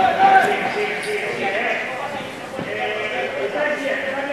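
Footballers shouting to each other on the pitch during play: several voices calling out at once, the loudest call right at the start.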